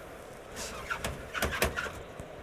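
A few faint clicks and knocks from a metal fuel cell unit being pushed into its slot in a rack, over low background noise.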